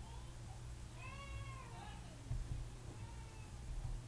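A short animal call, one pitched cry that rises and falls about a second in, with fainter calls around it, over a low steady hum. Two low thumps follow, about halfway through and near the end.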